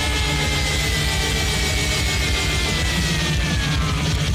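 Loud rock music: one long high note is held and then slides down in pitch near the end, over a steady low end.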